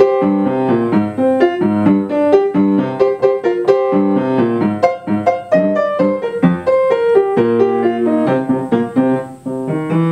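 Upright piano played with both hands: a rock-style grade 1 piece in quick, evenly paced notes, with a brief softer moment near the end.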